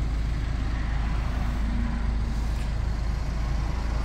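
Steady low rumble with an even hiss inside a car's cabin.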